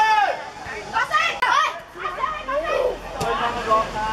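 Youth football players and spectators shouting and calling over each other, with one loud drawn-out shout right at the start.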